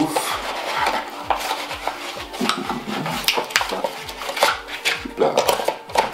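Hands rummaging in a small cardboard box and its moulded insert, with a busy run of sharp clicks, taps and light rattles of small hard parts.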